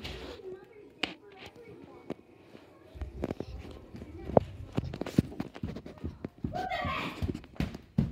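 Footsteps and irregular knocks on a hardwood floor, a cluster of short thumps after about three seconds, with a brief voice-like sound near the end.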